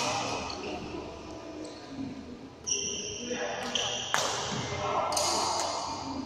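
Badminton play: sharp racket hits on a shuttlecock near the start and about four seconds in, with short high sneaker squeaks on the court floor around three to four seconds in.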